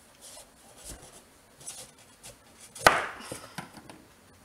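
Chef's knife cutting through a peeled pumpkin on a plastic cutting board: a few soft scraping strokes, then one sharp knock on the board about three seconds in as the pumpkin splits in two.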